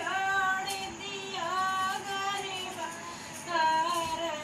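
A Dehati (rustic Hindi folk) song: a high-pitched voice singing long, slightly wavering held notes in short phrases over backing music.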